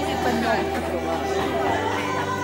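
Several people talking at once: crowd chatter.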